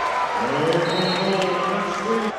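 Arena crowd cheering a made three-pointer, with one man's voice held in a long drawn-out call over the noise.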